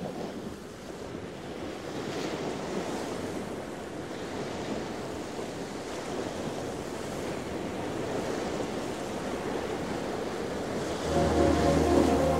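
Ocean surf washing in a steady rushing haze with slow swells, the opening of an ambient electronic track. About eleven seconds in, synthesizer music enters with a held low bass note and chords.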